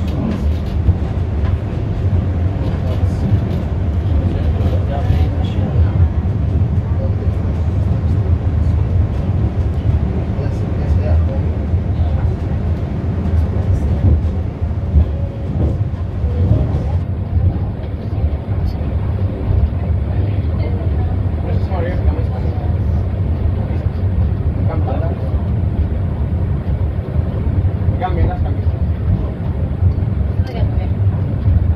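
Funicular car running along its rail track, heard from inside the car: a steady low rumble, with faint voices in the background.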